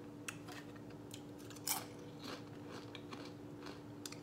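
Faint scattered clicks and small crackles from handling food at a plate, one sharper crackle near the middle, over a steady low hum.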